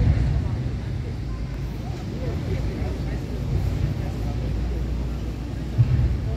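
Low, steady rumble of a small boat under way on a river, with wind buffeting the microphone in gusts and faint voices over it.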